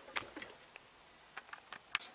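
A few light, scattered clicks and taps, about six in two seconds, from a car side mirror and small parts being handled on a workbench.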